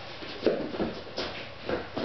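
Bodies and clothing shuffling on foam mats, with a few irregular soft thuds and rustles as the grapplers move and separate.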